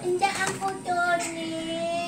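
A child singing in a high voice: a few short notes, then one long held note from about a second in.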